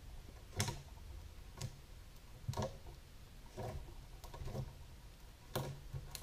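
Soft clicks coming evenly, about once a second, over quiet room tone.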